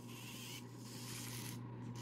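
Faint steady low hum with a light hiss, with no distinct sounds over it.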